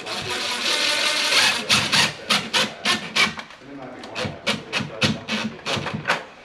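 Cordless drill driving a screw: the motor runs steadily for about a second and a half, then a quick series of sharp clicks follows.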